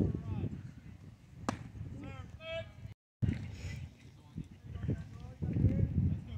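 A single sharp crack about one and a half seconds in: the pitched baseball meeting the plate area. Spectators' voices murmur around it, and a higher-pitched call follows shortly after.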